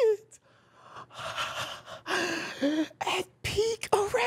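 A man's breathy gasps without words: a brief pause, then two long breathy gasps about a second in, followed by short vocal noises near the end.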